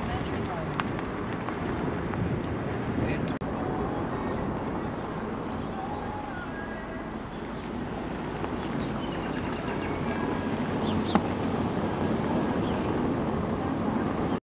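Steady wind rush and road noise from a moving car, heard from a camera on the car.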